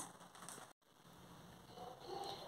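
Near silence: faint room tone, broken by a moment of total silence a little under a second in, where the recording is cut.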